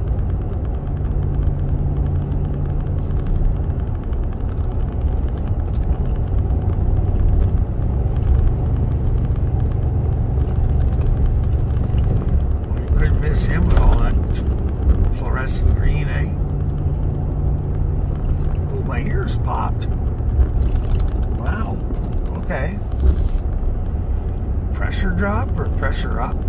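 Truck driving on a rough country road, heard from inside the cab: a steady low engine and road rumble. From about halfway on, snatches of a voice come through over it.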